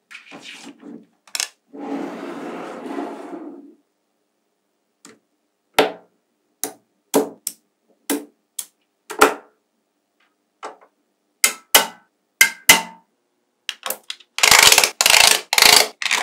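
Small metal magnetic balls clicking sharply as they are snapped into place one block at a time, with a longer scraping rustle about two seconds in. Near the end comes a dense, loud run of clicking and rattling as rows of balls are pushed into the structure.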